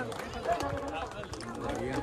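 Indistinct voices of a crowd, several people talking and calling out at once, with no clear words.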